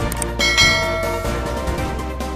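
Background music with a bright, bell-like chime sound effect about half a second in, rung as the notification bell is clicked in a subscribe-button animation.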